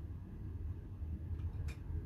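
Low, steady background rumble of a small room, with two faint clicks about a second and a half in.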